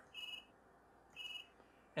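Cell phone ringing faintly: two short, high electronic beeps about a second apart.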